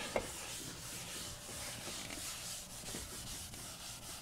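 A chalkboard eraser rubbing across a chalkboard, wiping off written chalk: a steady, high-pitched scrubbing hiss.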